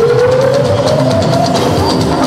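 Live band music, with a drum kit keeping a steady beat and a single note sliding upward over the first second and a half.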